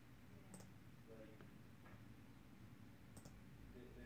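Two faint clicks of a laptop's pointing device, about two and a half seconds apart, over near silence.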